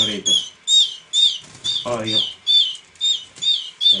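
Hand-reared canary chick calling over and over, short high chirps that bend downward in pitch, two or three a second: the begging calls of a fledgling being hand-fed.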